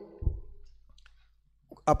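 A pause in a man's close-miked talk: a soft low pop on the microphone about a quarter second in, then faint mouth clicks, with a sharper click just before his voice starts again at the very end.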